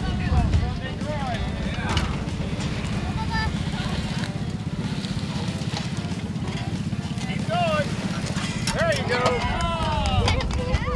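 An engine running steadily, with voices calling out just after the start and again near the end.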